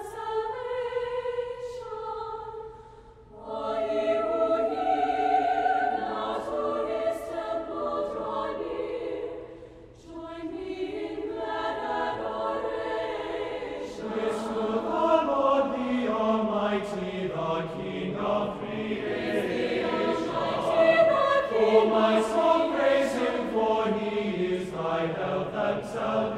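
A choir singing, with two short pauses between phrases about three and ten seconds in. The singing grows fuller and louder in the second half.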